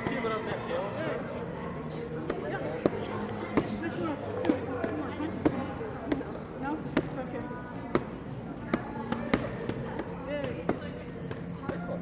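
Repeated strikes landing on a handheld padded striking shield, sharp slaps and thuds at roughly one to two a second in uneven bursts, with voices talking behind.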